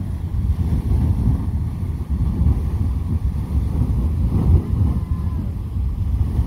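Beehive Geyser erupting: a steady rushing jet of water and steam from its cone, mixed with a heavy low rumble of wind on the microphone.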